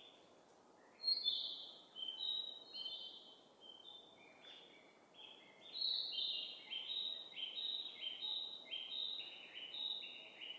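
Small birds chirping, short high notes that begin about a second in and quicken into a steady run of roughly two notes a second in the second half.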